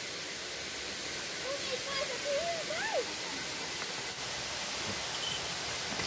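A steady rushing hiss, with faint voices talking about one and a half to three seconds in.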